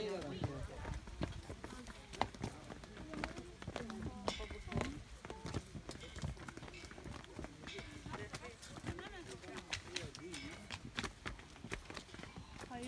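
Footsteps on stone steps and paving: irregular hard clicks, with people talking in the background.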